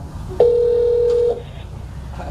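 Telephone ringback tone over a mobile phone's loudspeaker held to a microphone. One steady beep just under a second long, the sign of a call ringing at the other end.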